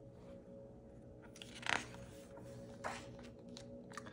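Paper rustling as a picture-book page is handled and turned, in a few brief swishes.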